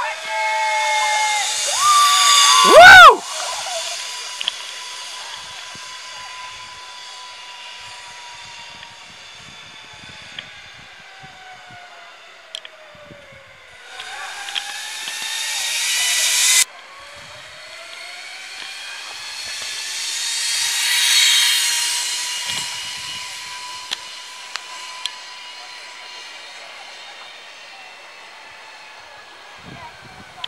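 Zip line trolley pulleys running along a steel cable: a high whirring hiss with a thin whine that swells as each rider comes closer and drops in pitch as they go past, several passes in a row. A short, very loud burst comes about three seconds in.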